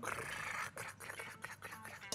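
Freshly fried tulumba pastries, crisp shells soaked in syrup, crackling and scraping as they tumble from a colander onto a plate: a dense rustling crackle at first, then scattered small crackles.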